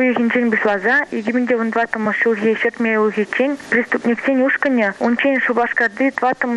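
Continuous speech throughout: a voice talking without a pause.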